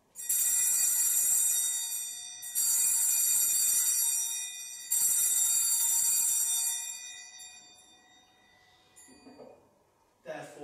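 Altar (sanctus) bells rung three times, each ring starting suddenly and fading away, about two seconds apart, marking the consecration of the wine at the Eucharist.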